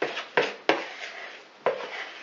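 Metal spoon knocking and scraping against a plastic mixing bowl while scooping out chocolate batter: four sharp knocks, three close together in the first second and one more near the end, each followed by a short scrape.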